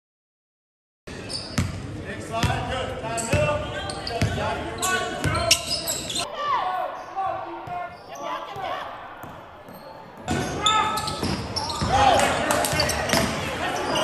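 Basketball game sounds echoing in a gymnasium: a ball bouncing on the hardwood court, sneakers squeaking and players' and spectators' voices, starting about a second in after silence. It quiets for a few seconds in the middle, then picks up again.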